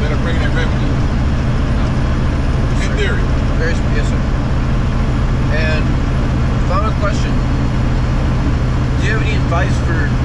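Semi-truck cab interior at highway speed: the diesel engine and road noise make a steady low drone that does not change.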